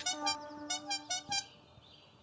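A quick run of short honking horn toots at changing pitches, some sliding down, over in about a second and a half.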